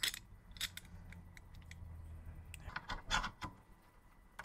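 Light metal clicks and clinks of the parts of a 1x30 belt sander's angle guide being handled and fitted back together, scattered at first and bunched together about three seconds in, over a faint low hum.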